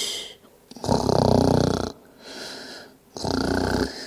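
A woman making pretend snores: two loud, rattling snores about two seconds apart, with a softer breath out between them.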